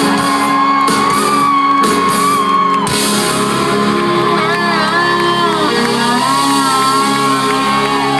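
Live country-rock band playing loud amplified music: electric guitars and drums, with a long held note over the first three seconds. From about three seconds in, nearby fans shout and whoop over the music.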